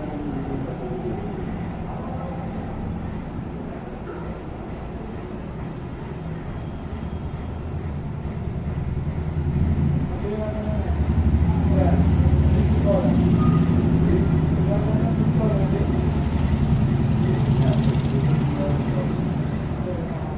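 A vehicle engine rumbling, growing louder about ten seconds in and staying up for most of the rest, with faint voices in the background.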